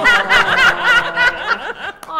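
Laughter led by a high-pitched laugh, lasting about a second and a half before it dies down.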